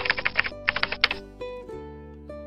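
Computer-keyboard typing sound effect: two quick runs of key clicks in the first second or so, over light background music.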